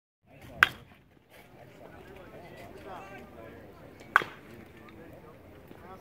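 Two sharp cracks of a baseball bat hitting pitched balls, about three and a half seconds apart, each with a brief ring. Voices chatter faintly underneath.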